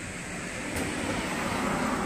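A car passing on the road. Its tyre and engine noise grows steadily louder and is loudest as it goes by near the end.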